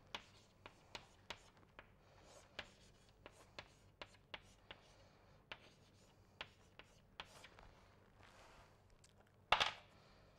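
Chalk on a chalkboard as an equation is written: faint, irregular taps and short scratches of the chalk stroking the board. There is a louder bump near the end.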